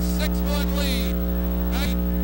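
Loud, steady electrical hum on the recording, unchanging throughout, with faint indistinct voices in the background.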